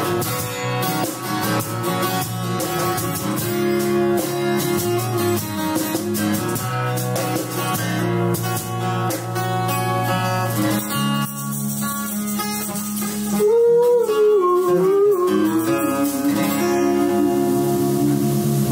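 Acoustic guitar and acoustic bass guitar playing an instrumental passage of a song. About two-thirds of the way through, a wavering, bending melody line comes in over the chords and the music gets louder.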